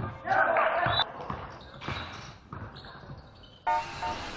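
Live game sound in a large gym: a basketball bouncing on the hardwood court and players' voices shouting, echoing in the hall, with the backing beat cut out. Music comes back in suddenly near the end.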